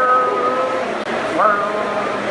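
Two or more high voices holding long wordless notes together, with an upward slide in pitch about one and a half seconds in.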